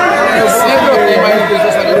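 Several voices talking over one another: loud, overlapping chatter.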